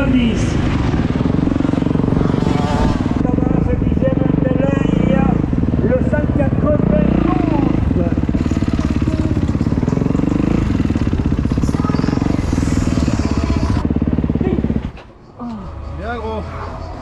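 Motocross bike engines running hard, their pitch rising and falling as they rev on and off the throttle; the sound cuts off abruptly about fifteen seconds in.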